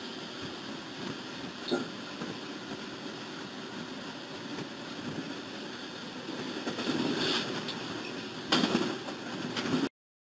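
Locomotive cab noise: a steady rumble and hiss, swelling louder about seven seconds in and with a sudden loud burst about eight and a half seconds in, then cutting off abruptly just before the end.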